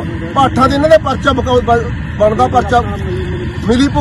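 A man speaking, with a steady low rumble underneath.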